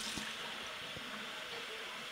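Steady hiss of water running, as from a kitchen tap, with a couple of faint low knocks.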